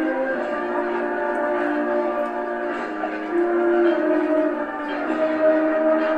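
A brass band playing a procession march, with long held chords that change pitch every second or so.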